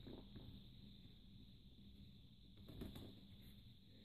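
Near silence, with faint handling noise as a tablet is pressed into its case and the case's elastic corner straps are hooked over the tablet's edges; one brief, soft sound comes a little before three seconds in.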